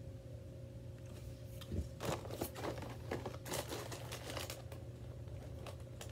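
Snack packaging crinkling as it is picked up and handled, a quick run of crackles starting about two seconds in and dying away shortly before the end.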